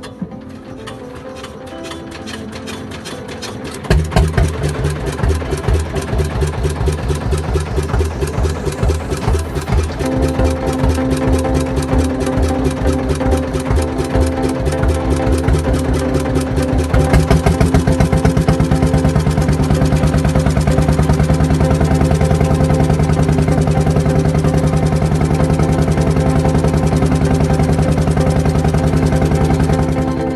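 Small wooden fishing boat's engine running with rapid, even firing pulses, getting louder about four seconds in and again partway through as the boat gets under way.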